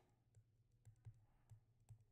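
Near silence with a few faint, separate taps and clicks of a stylus on a tablet screen during handwriting.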